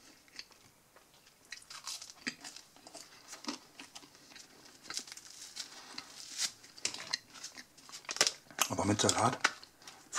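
Crusty baguette being chewed and torn apart by hand: a run of small, crisp crackles and crunches of the crust, growing busier after the middle.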